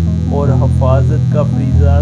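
A man narrating over background music with guitar, and a steady low hum underneath.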